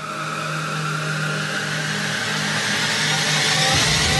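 Transition sound effect: a rising sweep over a steady engine-like drone, swelling louder throughout, like a car accelerating.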